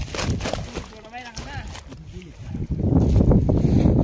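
Several people's voices calling out in the first half, then a loud, dense rushing noise for the last second and a half.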